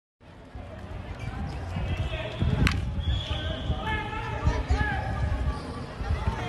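A baseball bat hitting a pitched ball once, a sharp crack about two and a half seconds in, over low wind rumble on the microphone and people talking nearby.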